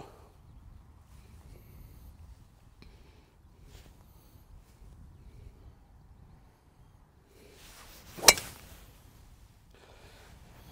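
Golf driver striking a ball off the tee: the swing's swish rises into one sharp, loud crack a little past eight seconds in.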